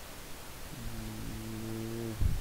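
A man's voice holding a low, steady hum, a drawn-out 'mmm' or 'uhh', for just over a second, starting a little before the middle.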